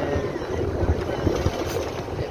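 Rumble of a moving bus with wind buffeting the microphone at its open doorway.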